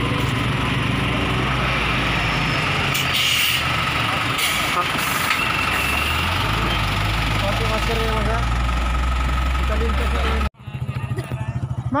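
Diesel engine of an Isuzu NMR 71 light truck idling close by, a steady low hum, with a couple of brief hissing noises about three to five seconds in. The sound cuts off abruptly near the end.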